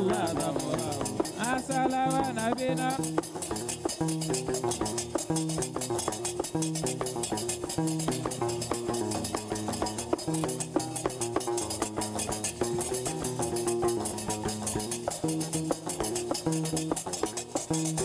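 Gnawa music: a guembri (three-string bass lute) plucking a repeating bass line, with qraqeb metal castanets clacking a fast, steady rhythm. A voice sings briefly near the start.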